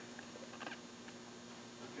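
Quiet meeting-room tone with a steady low electrical hum and a few faint, brief small noises.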